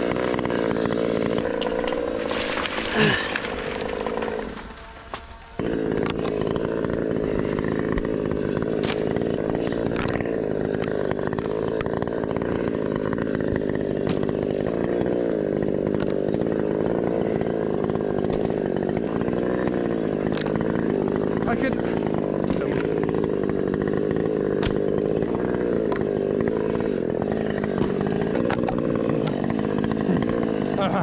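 Top-handle chainsaw engine in the tree: a short burst near the start, a brief lull around five seconds in, then running steadily with a slight waver in pitch.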